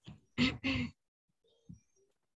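A woman's short laugh in two quick bursts, followed by a faint thump near the end.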